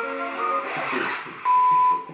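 Music from the video being watched, then about one and a half seconds in a loud, steady, high test-tone beep that lasts half a second and cuts off, the kind that goes with TV colour bars.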